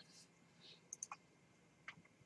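Near silence with a few faint, short clicks: a cluster about a second in and one more near the end.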